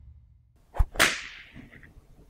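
Editing sound effect: a short knock, then a moment later a louder, sharp crack that dies away over about half a second.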